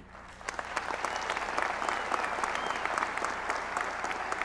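Audience applauding, rising about half a second in and then holding steady.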